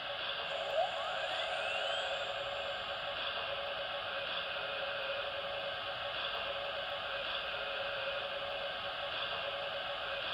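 MTH Premier O-scale steam locomotive's sound system starting up: a steady steam hiss through its small onboard speaker, with a rising whine, like a dynamo winding up, about a second in.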